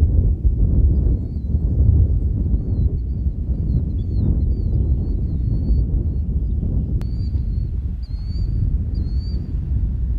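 Wind buffeting the microphone in a steady low rumble, with a small bird chirping repeatedly in short high notes that are clearer in the last few seconds.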